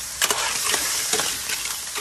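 Amontillado sherry sizzling in a hot pan of clams over a wood fire, with a few sharp clicks of metal tongs and clam shells knocking against the pan as the clams are stirred.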